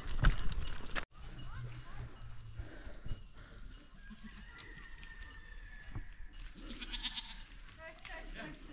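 A flock of goats and sheep moving over loose stony ground: hooves clattering on the rocks for about the first second, then, after an abrupt cut, quieter, with goats bleating.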